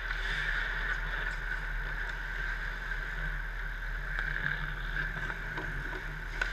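Indoor ice hockey rink ambience: a steady hum fills the arena, with faint scattered clicks and scrapes of sticks, puck and skates from play on the ice.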